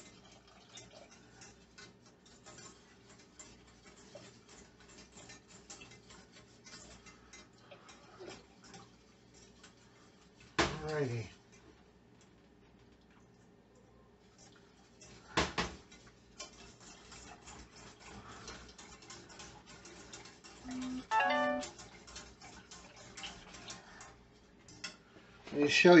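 Wire whisk working in a small stainless-steel saucepan, faint rapid metal ticking as milk and cream are whisked into a butter-and-flour roux to keep the sauce smooth and free of lumps. One sharper knock against the pan comes about halfway through.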